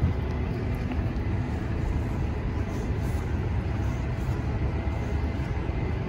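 Steady low rumble of outdoor city ambience.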